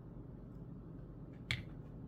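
Faint room tone with one short, sharp click about one and a half seconds in.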